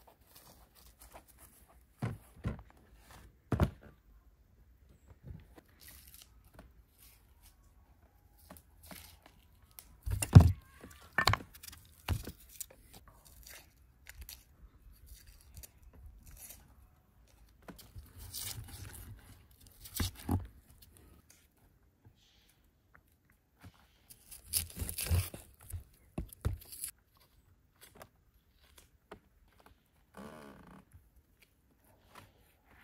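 Hand food preparation: a knife knocking now and then on wooden cutting boards as raw beef and onions are cut, with dry crackling and tearing of onion skins being peeled. The knocks are scattered and irregular, the sharpest about ten seconds in, with a longer run of crackling near the end.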